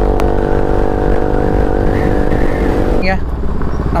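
Motorcycle engine running at steady cruising revs, with wind rumble on the handlebar-mounted camera's microphone. The engine note eases off about three seconds in.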